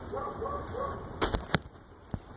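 Two brief sharp knocks a little past the middle, after a faint wavering pitched sound in the first second.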